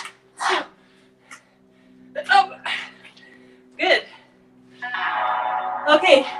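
A woman's short, forceful breaths and exhales, about five in six seconds, over background music with a steady low drone. The music gets fuller about five seconds in.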